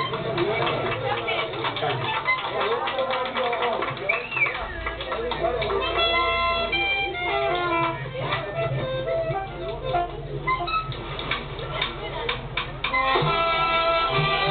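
People talking among themselves as a live band's instruments begin: melody notes come in about six seconds in, and the full band with bass joins near the end as the song starts.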